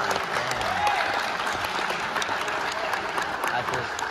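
Spectators' applause after a point in a badminton match, a dense spread of clapping with a few voices mixed in, slowly tapering off.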